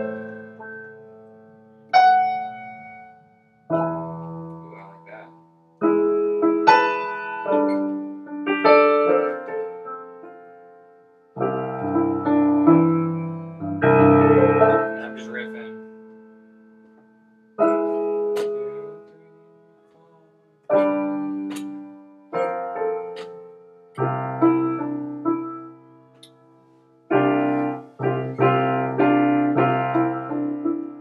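Roland Fantom X8 workstation keyboard played with a piano sound: chords struck with both hands every second or few, each ringing and fading away. The chords come more quickly near the end.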